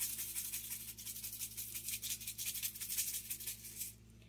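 Seasoning shaker being shaken over a pot, a quick steady rattle of many shakes a second that stops near the end.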